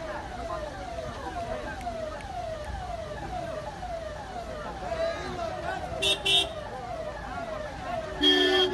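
Police vehicle siren sounding in a fast repeating pattern of falling sweeps, about two a second. Two short vehicle horn toots about six seconds in.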